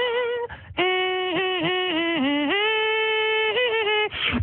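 A male vocalist sings a wordless melody into a studio microphone, holding long, level notes that step abruptly down and then back up in pitch, with a short break about half a second in. There are no beatbox percussion sounds.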